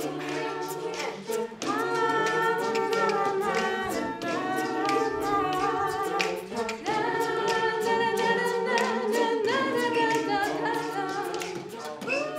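A small choir of teenage girls and boys singing a cappella, holding chords in phrases a few seconds long, over a run of sharp percussive clicks that keep a beat.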